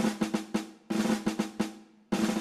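Intro of a children's textbook song: two quick snare-drum rolls, each starting loud and dying away, over a steady low held note.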